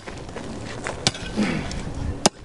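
A Crovel, a steel crowbar-shovel tool, swung as a pickaxe, its head striking hard, stony dirt once with a sharp hit about a second in.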